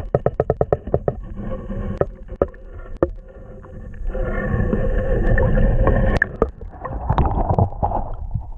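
Muffled water swirling and knocking, heard through a camera held under water in its waterproof housing. There is a quick run of clicks in the first second or so and a louder rushing stretch from about four to six seconds in.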